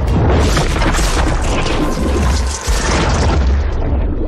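Loud underwater rush in a film soundtrack: a dense churn of bubbles and water over a deep booming rumble, starting suddenly and dipping briefly about two and a half seconds in, with the score running beneath.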